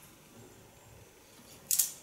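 Faint sounds of hair being combed and cut with scissors, then a short, loud hiss near the end.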